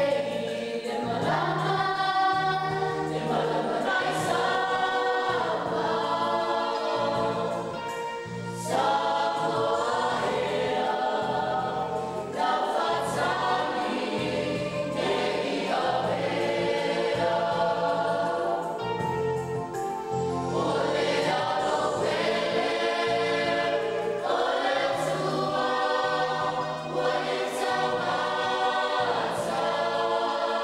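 A youth choir of girls and young women singing a church song together, several voices at once, with a steady low bass part underneath.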